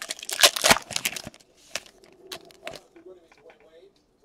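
Crinkling and rustling of plastic as trading cards are handled, a burst of loud crackles in the first second or so, then fainter handling ticks.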